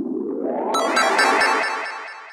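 Synthesized intro sting: a rising swoosh, then about three-quarters of a second in a bright, shimmering synth chord with a wobble that fades away.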